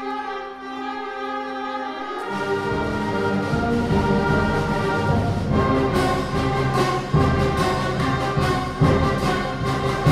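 Middle school concert band playing: held chords in the upper winds, then about two seconds in the low brass and percussion come in and the music grows louder, with accented percussion hits in the second half.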